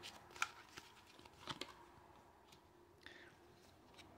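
Tarot cards being handled and drawn from a fanned deck: a handful of faint, short clicks and soft rustles, spaced out over near silence.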